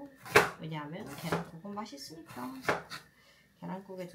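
Kitchen knife slicing onion on a wooden cutting board: a few separate sharp cuts against the board, the loudest about a third of a second in, heard under talking.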